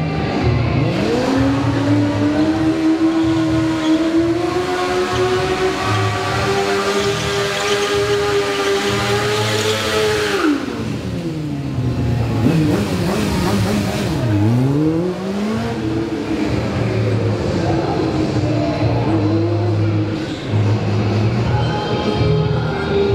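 Sport motorcycle engine revving hard during stunt riding. It is held at high revs and climbs slowly for about nine seconds, drops off sharply, then is blipped up and down several times. Music with a steady beat plays underneath.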